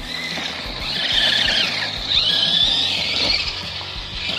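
Electric RC car's motor whining as it drives along a dirt track, the high whine rising and falling in pitch with the throttle.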